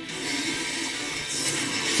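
Soundtrack of an animated episode: music under a steady rushing noise that swells in the second half.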